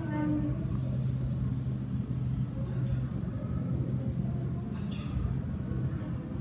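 Steady low hum of room background noise, even throughout, with a voice trailing off at the very start.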